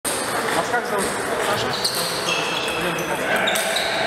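Table-tennis rally: the celluloid ball clicking off bats and the table in a quick, uneven series. High squeaks come through partway along, in a reverberant gym.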